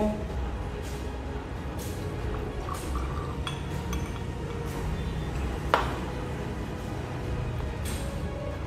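Laboratory glassware clinking a few times with short ringing taps, and one sharper knock a little before the last quarter, as glass is handled to fetch more sodium hydroxide for topping up a burette.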